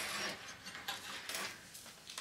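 Faint handling noise: soft rustling and a few light ticks as craft pieces are moved about on a cutting mat.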